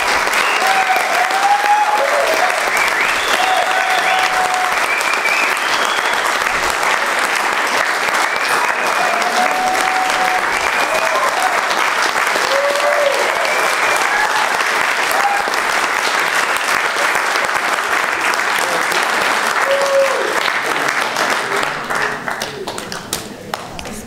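Audience applauding, with scattered shouts and cheers from the crowd; the applause thins out and fades near the end.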